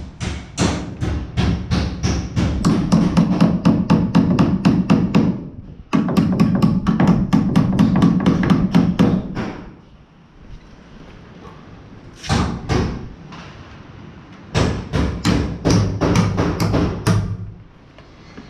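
Claw hammer driving nails into wooden wall studs to fasten electrical boxes, rapid blows at about four a second in four bursts with short pauses between.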